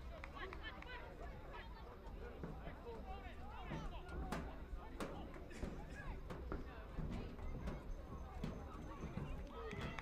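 Players and spectators calling out and shouting across an outdoor soccer field during play, the voices distant and unclear, with a couple of sharp knocks about four and five seconds in.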